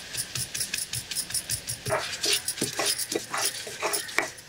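Hands scraping and gathering chopped onion on a stone grinding slab, with glass bangles clinking in irregular scrapes and clicks; near the end the stone roller is set onto the slab.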